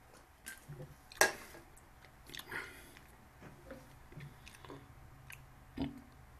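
Faint handling noise from hands working at a desk near the microphone: a few scattered clicks and taps, the loudest a sharp click about a second in, a brief rustle midway, and a soft thump near the end.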